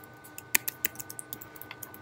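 Computer keyboard being typed on: an irregular run of light key clicks, about a dozen keystrokes in two seconds.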